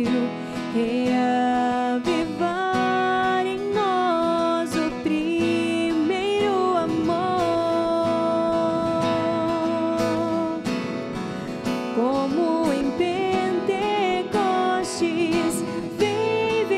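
Entrance hymn at Mass: a sung melody with held notes over acoustic guitar accompaniment.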